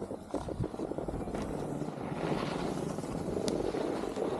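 Skis sliding and scraping over groomed snow, with wind rushing over the microphone; the rush grows louder about two seconds in.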